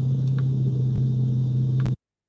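Steady low hum of a running car heard from inside its cabin, with a few clicks of the phone being handled. The sound cuts off suddenly just before the end.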